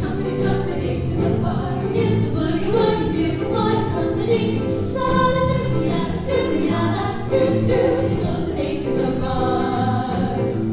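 Female vocal group singing a boogie-woogie swing number in close harmony into microphones, backed by a live band of piano, electric guitar, bass guitar and drums with a steady beat.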